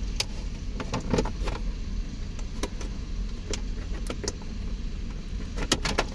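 Plastic centre-console trim panel of a 2020 Toyota Camry being pulled loose by hand: scattered short clicks and snaps of its clips and plastic, a cluster about a second in and two sharp ones near the end, over a steady low hum.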